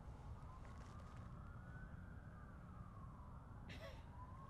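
Faint emergency-vehicle siren wailing, its pitch rising and falling slowly, about two seconds each way. There is a brief hiss near the end.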